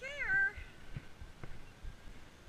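A single short, high-pitched call that rises and then falls in pitch, lasting about half a second at the very start.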